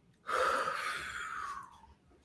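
A person letting out a held deep breath in one long audible exhale that fades away over about a second and a half.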